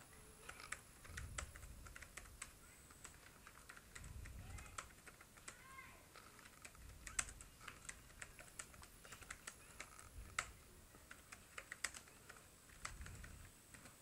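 Faint typing on a computer keyboard: irregular keystrokes, with a few louder clicks now and then.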